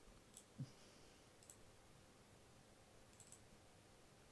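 Near silence, broken by a few faint computer mouse clicks: one about half a second in, one around a second and a half, and two or three quick ones a little after three seconds. There is also a brief soft low sound just after the first click.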